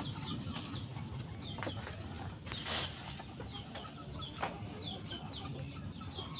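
Birds calling outdoors: short, high, falling chirps in quick runs of two or three. A few sharp clicks and a brief burst of noise come near the middle.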